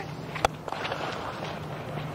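A single sharp crack of a cricket bat striking the ball about half a second in, over the steady low hum and open-air noise of the ground.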